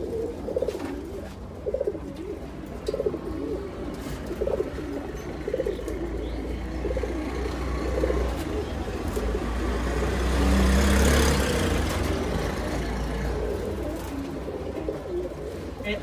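Several caged domestic pigeons cooing, with low coos repeating every second or so. A rushing noise with a low rumble swells and fades about two-thirds of the way through.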